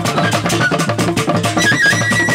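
Traditional Nigerian cultural band drumming: hand-struck and stick-beaten barrel drums playing a fast, dense, even rhythm, with a held high tone coming in near the end.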